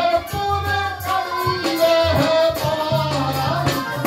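A man singing into a microphone, his voice amplified, over instrumental accompaniment with steady low notes and light percussion.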